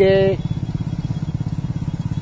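Motorcycle engine running steadily at low speed with an even, rapid thudding, turning a wooden kolhu oil press that is crushing sesame seed.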